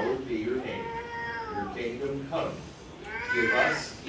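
A high-pitched voice with gliding pitch: a drawn-out note about a second in, and a louder rising-and-falling call near the end.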